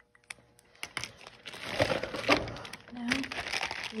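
A clear plastic bag of markers crinkling as it is handled, starting about a second and a half in, after a few faint clicks.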